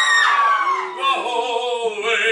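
A man's unaccompanied sung voice holds a high final note, then slides down in pitch. About a second in, audience cheering and applause break out.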